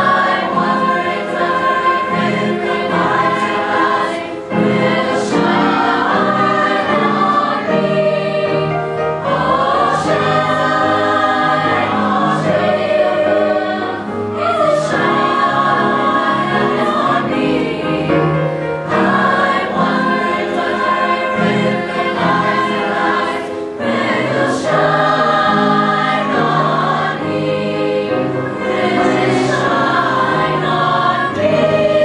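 A mixed youth choir singing in parts, holding sustained notes in phrases broken by short breaths every four to five seconds.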